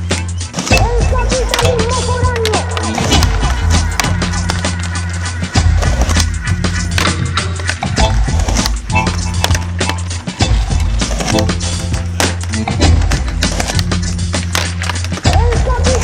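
Music with a heavy, repeating bass line, sharp beats and a voice singing or rapping over it.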